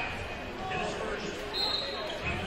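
Basketball gym during a game: spectators' voices, a basketball bouncing on the hardwood floor, and a brief high-pitched tone near the end.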